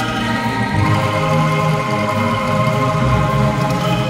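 Bamboo angklung ensemble playing a hymn tune, its notes held by shaking the instruments and moving through sustained chords.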